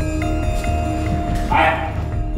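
Tense drama-score background music of held, overlapping notes, with a short loud cry-like burst about a second and a half in.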